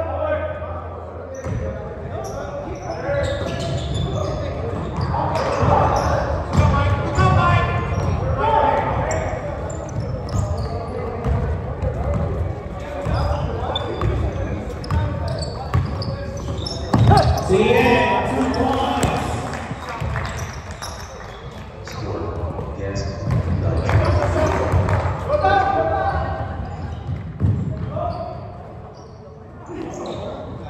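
A basketball game in an echoing gym: a ball bouncing on the hardwood court again and again, with players' footsteps and shouting voices.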